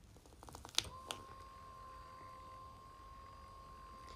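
Electric massage cushion switched on: a few light clicks from its button, then about a second in its motor starts and runs with a steady, faint whine.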